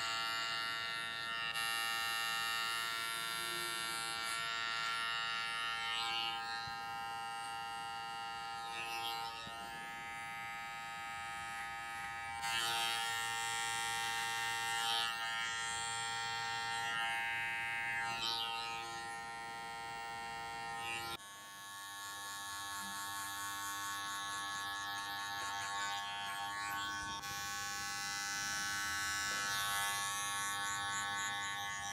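Electric hair trimmer buzzing steadily while it cuts short hair along the neckline and around the ear. About two-thirds of the way through, the buzz changes abruptly to a different pitch as a larger cordless clipper takes over at the nape.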